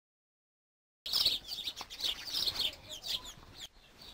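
Birds chirping in quick, short, high calls, starting about a second in after silence.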